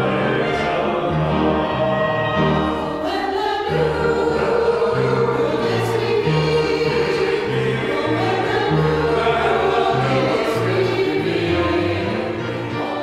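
Choral music: a choir singing slow, held chords over a bass line that moves step by step.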